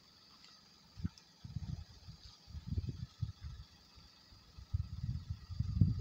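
Low, irregular rumbling and thumping on a handheld camera's microphone as it is moved about, beginning about a second in and coming in several bursts. Under it, a faint steady high chirring of crickets.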